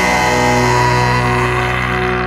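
Rock music: a held electric guitar chord rings out and slowly fades, with no drums, and its brighter upper tones die away near the end.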